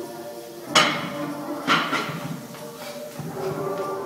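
Gym background music playing steadily, with two sudden loud knocks about a second apart near the start, from a weighted push sled being driven across a rubber gym floor.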